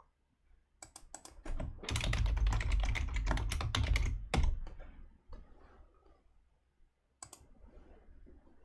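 Typing on a computer keyboard: a quick run of keystrokes lasting about three and a half seconds, then a single sharp click near the end.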